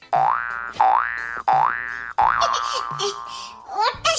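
Cartoon 'boing' comedy sound effect: three quick rising boings, then a longer note that slides slowly downward.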